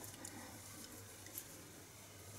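Near silence: faint room tone with a low steady hum, and the soft handling sounds of yarn being worked on a metal crochet hook, with one small tick about one and a half seconds in.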